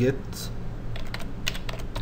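Computer keyboard keystrokes: a quick run of about half a dozen key clicks as a command is typed into a terminal.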